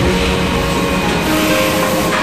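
Automatic kitchen-towel bundling and packaging line running, its conveyor belts and drives giving a steady mechanical noise.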